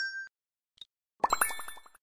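Synthetic interface sound effects for an animated subscribe button and notification bell. A chime dies away at the start. Just past a second in comes a quick run of about eight short plinks over bright ringing tones, the ring of the notification bell icon.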